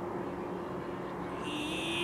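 Background noise with a steady, unchanging hum.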